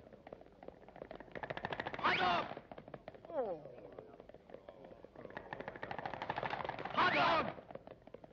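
Cartoon sound effects: two runs of a fast, even rattle, each ending in a short pitched squawk-like call, with a falling glide in between.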